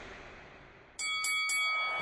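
Bright bell-like chime notes struck in quick succession about a second in, then ringing on: a short musical sting marking a segment transition. Before it a hiss fades away.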